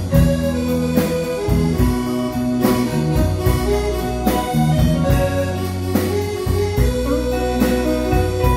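Live band playing the instrumental introduction of a song: sustained electronic keyboard (organ-like) chords and bass notes with electric guitar over a steady drum beat.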